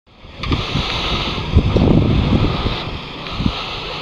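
Wind buffeting the camera microphone outdoors: uneven low rumbling gusts over a steady hiss, fading in just after the start and loudest around two seconds in.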